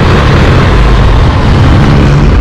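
Motorcycle on the move: loud, steady wind rumble on the camera microphone with the bike's engine running underneath.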